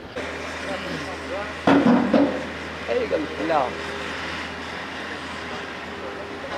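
Heavy machinery's diesel engine running steadily at low revs on a demolition site, a low drone with a faint steady hum, while voices speak briefly in the background.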